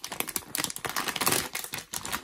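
A shiny foil-laminated blind bag crinkling and crackling as hands tear it open and handle it, a rapid run of crackles loudest a little past halfway.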